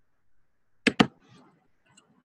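Two sharp clicks in quick succession about a second in, over quiet room tone.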